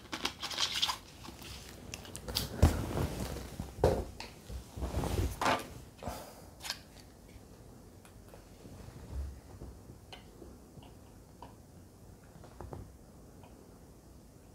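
Thin plastic water bottle crinkling and crackling in the hands as it is capped and handled, in irregular bursts, then a few faint clicks.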